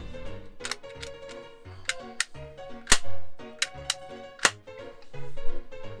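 Several sharp metal clicks and snaps from a toy lever-action cap rifle as its lever action is worked, the loudest about three seconds in, over background music.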